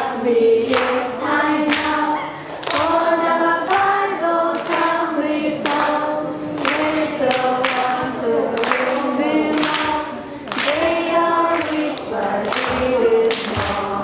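Children's choir singing a song together, phrase after phrase with short breaths between lines.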